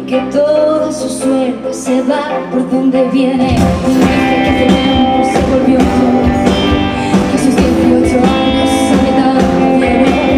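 Live pop-rock song: a woman singing over guitar, with the full band, electric guitar and a heavy low end with a steady beat, coming in about three and a half seconds in.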